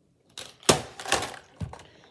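Plastic toy foam-dart blaster with a belt of darts being swung and handled: a few hard plastic clacks and rattles over about a second, the loudest a little under a second in.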